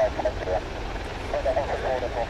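Low, steady rumble of the Boeing P-8A Poseidon's twin CFM56 jet engines as it climbs away after takeoff, with people's voices talking over it.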